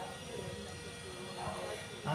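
A person drinking water from a plastic bottle: quiet swallowing and bottle handling.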